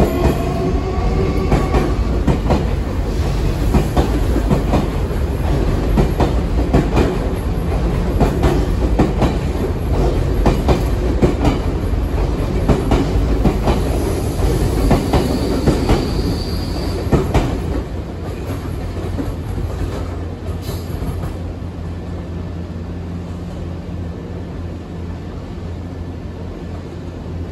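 Nankai electric commuter train running past over the station's points and curves: a rapid run of wheel clacks over rail joints and switches, with high wheel squeal from the curves near the start and again about two-thirds of the way through. The clacking fades after about 18 seconds, leaving a lower, steadier rumble.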